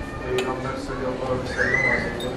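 Several people laughing and talking at once, with a high rising-and-falling voice near the end.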